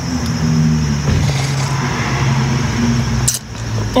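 A long slurp of thick fruit smoothie drunk from a blender cup, ending about three seconds in, over the steady low hum of a car engine idling.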